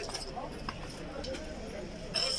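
Horses' hooves clopping a few times, irregularly, on the ground of a busy horse yard, under a murmur of men's voices.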